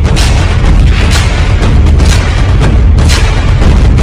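Loud, dramatic news-intro theme music with heavy booming bass and a sharp hit or whoosh every half second to second.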